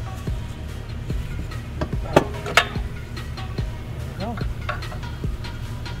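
Background music, with two sharp knocks a little after two seconds in and a few softer clicks as the aluminium crankcase side cover of a small single-cylinder engine is pried loose and lifted off its gasket.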